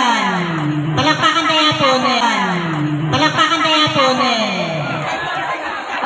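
A woman singing an Ilocano folk song through a handheld microphone. Each phrase slides down in pitch, and the phrases repeat about every two seconds.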